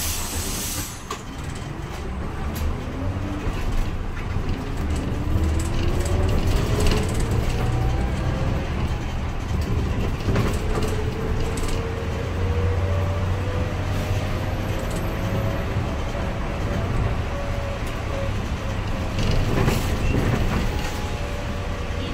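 Hyundai natural-gas town bus accelerating, heard from inside the cabin: a whine that rises in pitch over the first dozen seconds as the bus gathers speed, then holds steady over a low engine rumble and road noise. A short hiss of air at the very start.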